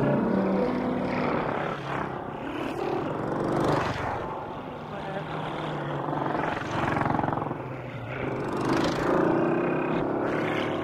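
Electroacoustic tape music: surges of rushing, engine-like noise swell and fade every couple of seconds over low held tones.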